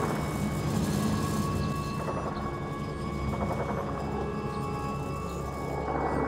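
Steady low rumble of military vehicle engines, with a sustained music drone held over it.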